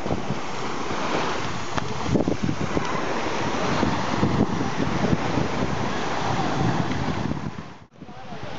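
Small waves breaking and washing on a sandy shore, with wind buffeting the microphone in gusts. The sound fades out suddenly just before the end.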